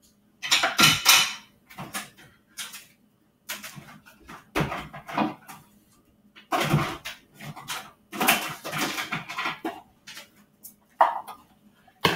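Rummaging through kitchen cupboards for a bowl: dishes and plastic containers clattering and knocking in a string of short, separate bursts, the loudest about half a second in.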